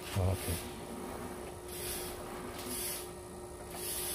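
Potter's wheel spinning with a steady hum, a short high swish repeating about once a second as wet clay turns under the potter's hands.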